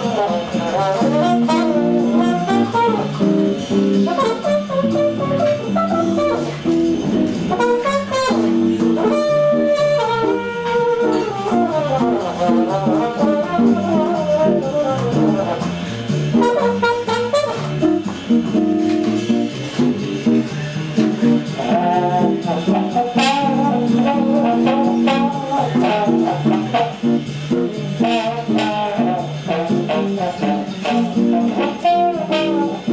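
Trumpet playing a jazz melody with bending, wavering notes over a chordal accompaniment.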